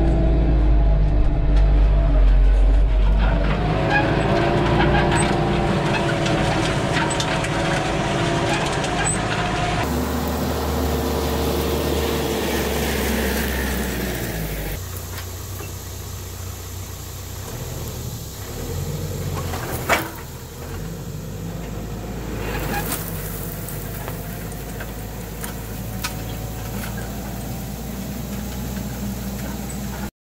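Kioti RX7320 tractor's diesel engine running steadily as it pulls a chisel disc harrow through the soil, heard first from inside the cab and then from behind the tractor. A single sharp knock about two-thirds of the way in.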